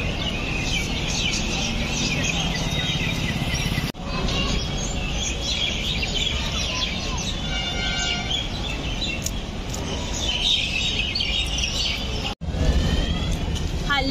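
Many birds chirping and chattering together in a dense, overlapping chorus over a steady low background rumble. The sound cuts out for an instant twice, about four seconds in and near the end.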